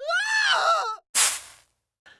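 A short high-pitched cry that rises and then falls in pitch over about a second, followed by a sharp burst of noise that quickly fades.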